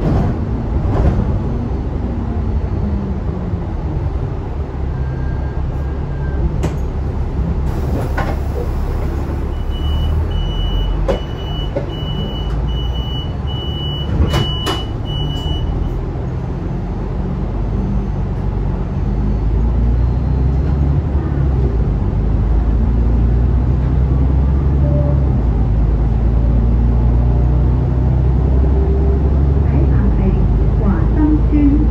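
Interior of an Alexander Dennis Enviro500 Euro 5 double-decker bus running, heard from the lower deck. A burst of air hiss comes about eight seconds in, followed by a run of short high beeps and a few knocks. From about twenty seconds in the engine grows louder as the bus pulls away.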